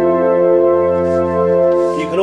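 Korg Triton Rack synthesizer module playing its 'Soft Piano Pad' combination: a chord of soft piano layered with a pad, held steady.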